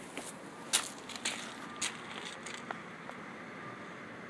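Footsteps, a few light steps about half a second apart, then softer ones, over faint outdoor background noise.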